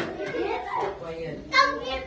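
Young children's indistinct chatter and voices, with a brief high-pitched child's call near the end.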